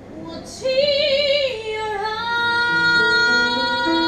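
A woman singing live into a microphone. She comes in about half a second in on a held note with wide vibrato, slides down, then holds a long steady note.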